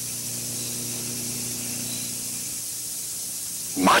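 Steady hiss with a low, even hum underneath and nothing else: the background noise of an old off-air videotape recording during a silent moment in the soundtrack. A man's shout begins right at the end.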